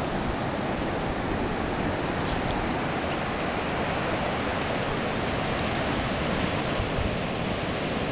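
Steady rush of ocean surf breaking on a sandy beach, an even wash of noise with no single wave standing out.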